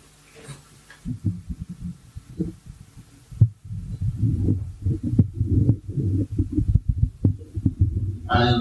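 Handling noise from a handheld microphone being picked up and moved about: irregular low thumps and rumble, starting about a second in, with a brief pause partway through.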